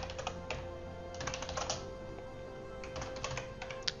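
Computer keyboard typing in three short runs of quick keystrokes, over a faint steady tone.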